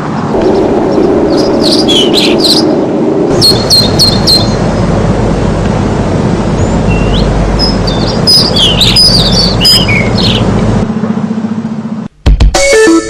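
Birds chirping in several short groups of high calls over a loud, steady rushing noise, with a deep rumble underneath from about three seconds in until near the end.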